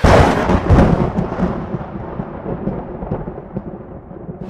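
A thunderclap that hits suddenly and rolls away in a rumble, fading over about four seconds as the higher sound dies out first.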